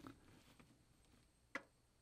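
Near silence with two faint metal clicks, one at the start and a sharper one about one and a half seconds in, from the small hook and trigger pieces of a wooden guillotine mouse trap being fitted together by hand.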